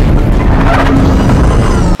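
Film sound effects of the Batpod motorcycle breaking out of the Tumbler: a loud, dense rush of engine and mechanical noise that cuts off abruptly at the end.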